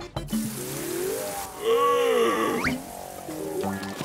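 Cartoon score and sound effect: a wavering tone that swings up and down in pitch, louder in the middle, ending in a quick upward swoop, followed by a few short stepped notes.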